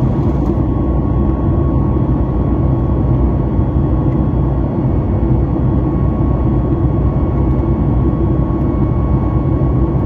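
Boeing 737 MAX cabin noise in cruise: a steady rush of engine and airflow noise, heaviest in the low end, with a faint steady whine above it.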